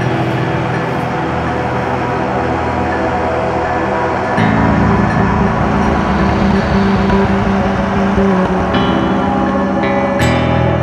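Background music of long, held low chords that change about four seconds in and again near the end.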